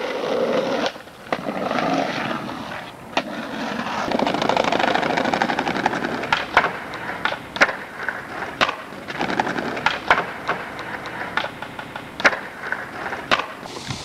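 Skateboard rolling on pavement, the wheels making a steady rumbling hiss, with a string of sharp clacks as the board strikes the ground.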